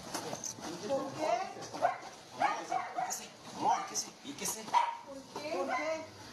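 People's voices with a dog barking.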